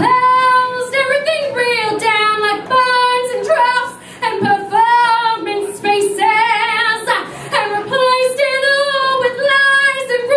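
A woman singing solo into a microphone, with long held notes and a wide vibrato on a held note about six and a half seconds in.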